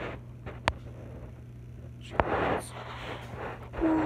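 Handling noise from a phone or tablet held close to the face: two sharp clicks about a second and a half apart, the second followed by a brief rustle, over a steady low hum.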